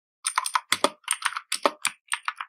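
Computer keyboard being typed on: a quick, uneven run of key clicks beginning about a quarter second in.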